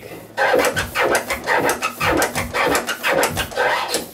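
Turntable scratching on a vinyl record, cut in and out with the mixer's crossfader set to hamster. This is the boomerang scratch (slice, stab, reverse slice, reverse stab) played in varied timings, a rapid run of short chopped notes.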